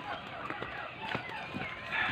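Soft footsteps of someone walking in rubber clogs on a dirt path strewn with gravel and rubble, a step about every half-second.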